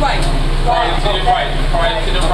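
Loud voices, speech-like and continuous, over a steady low hum.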